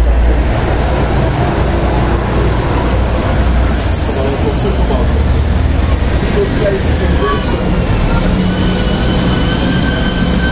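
Loud, steady low rumble of heavy city-centre traffic, a large vehicle passing close by, with thin high squealing tones coming in about four seconds in and again from about seven seconds.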